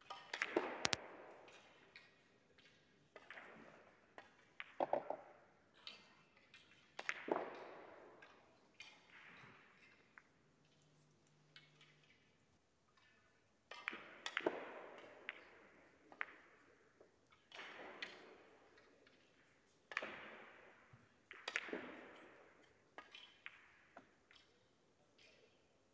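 Faint, echoing clicks of pyramid billiard balls striking one another, every second or two, from other tables in play in the hall.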